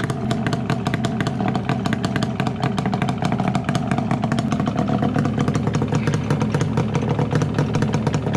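Yamaha Banshee's twin-cylinder two-stroke engine, fitted with aftermarket pipes, running at a steady idle with a fast, choppy beat.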